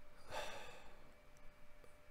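A short breath into a close microphone about a quarter second in, then faint room tone with a low steady hum.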